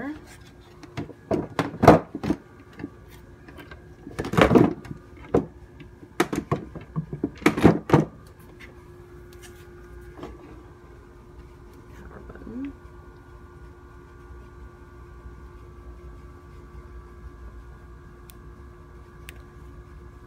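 Handling noise from an electric longboard being turned over on a table: several clunks and rustles of the deck and cables in the first eight seconds. After that, only a faint steady hum.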